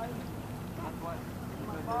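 Boat motor running at a steady low hum, with people's voices over it.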